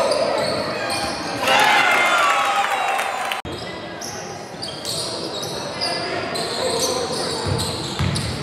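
Basketball game sounds in a sports hall: the ball bouncing on the hardwood court, sneakers squeaking and players calling out. The sound is busiest from about one and a half seconds in, then breaks off briefly a little over three seconds in before the same game noise carries on.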